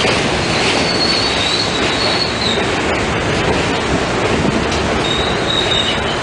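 R68A subway cars rolling along the track past the platform with a continuous steel-wheel rumble. A high-pitched wheel squeal rises over it about a second in, lasts a second and a half, and returns briefly near the end.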